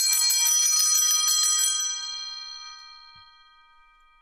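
Four-bell brass altar bells (Sanctus bells) shaken rapidly, a bright jangling peal, then, about two seconds in, left ringing and slowly dying away.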